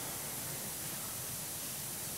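Steady faint hiss of room tone and microphone noise, with no other sound.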